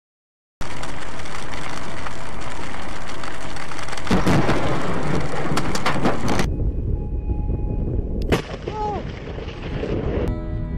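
Loud, close thunder starting suddenly and holding as a heavy, steady rumble with crackling for about six seconds. It then drops to a lower rumble, with a sharp crack about eight seconds in and a brief exclamation from a person.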